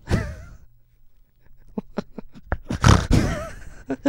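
Men laughing into microphones: a short laugh, a near-quiet pause of about a second, then a run of short, stuttering breaths building into a louder laugh near the three-second mark.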